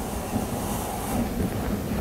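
Steady low rumble and hiss of room noise in a presentation hall, with a few faint soft bumps.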